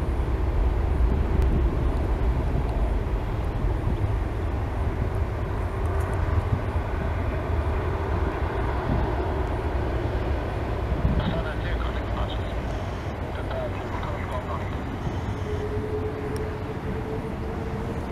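Boeing 777-200ER's Rolls-Royce Trent 892 turbofans running at low thrust as the jet taxis and turns onto the runway, a steady rumble with wind on the microphone. From about three seconds before the end a whine comes in and rises slowly in pitch as the engines begin to spool up for takeoff.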